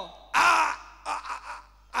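A loud, rough shouted vocal exclamation of about half a second near the start, followed by a few short, softer vocal sounds.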